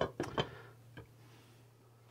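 Glass pan lid being set down onto a frying pan: a few light clinks in the first half second and one more about a second in, then quiet with a faint steady hum underneath.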